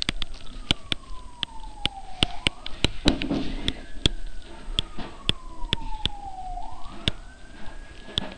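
An emergency-vehicle siren wailing, its pitch sliding slowly down and then sweeping quickly back up, twice. Quick clicks and taps of a stylus on a pen tablet run throughout as handwriting is entered.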